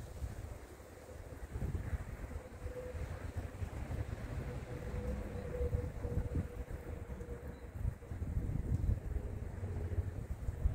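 Wind buffeting the microphone, with a faint steady tone from a small outdoor warning loudspeaker heard through the middle of the gusts.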